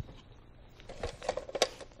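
Soft handling clicks and rustles in a small room: quiet at first, then a quick cluster of short clicks in the second half.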